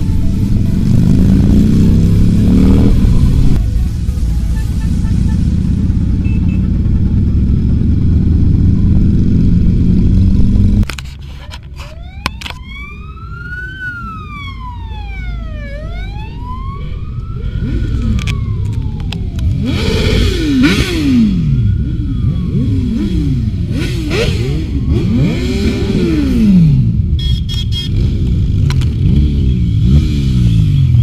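Electronic dance music plays for the first ten seconds or so. After a sudden cut, a police car siren wails, its pitch sweeping up and down. A line of motorcycles then passes one after another, each engine's pitch rising and falling as it goes by.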